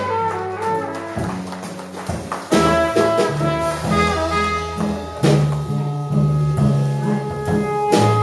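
A small live jazz band playing, with a trumpet holding long notes over a moving low line and drums, and sharp drum hits about two and a half and five seconds in.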